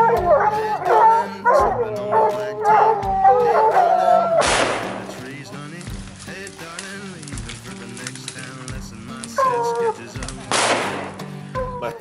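Hounds baying and howling at a treed mountain lion over a country song. About four seconds in comes a sudden loud crack with a long fading tail: a .30-30 lever-action rifle shot. More baying follows, then another sharp crack near the end.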